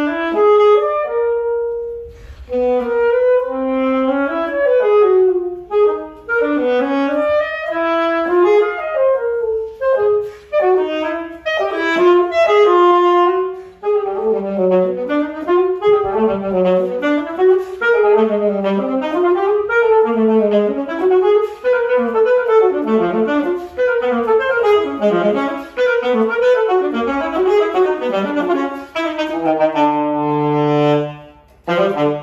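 Solo saxophone playing an unaccompanied melody, breaking off briefly about two seconds in, then moving into quick running passages from about halfway through.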